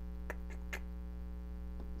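Steady electrical mains hum from the guitar rig, a little noisy with an external pedal in the Helix effects loop. A few faint clicks come in the first second as the Helix joystick scrolls through the block menu.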